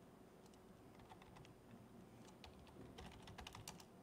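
Faint typing on a laptop keyboard: scattered key clicks that come quicker and closer together in the second half.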